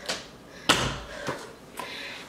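A room door being shut: one sharp bang a little under a second in, followed by two softer knocks.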